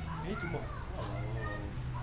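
Children's voices chattering and calling in the background, over a steady low hum.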